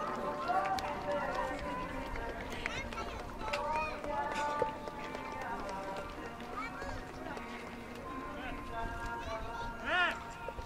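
Crowd of spectators talking among themselves, many voices overlapping, while music plays in the background.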